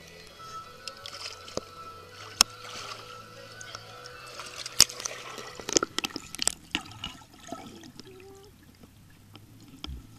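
Swimming-pool water sloshing and splashing around a camera as it moves through and below the surface, with sharp knocks and clicks. The loudest come about two and a half and five seconds in, then a run of them follows. Steady background music plays underneath.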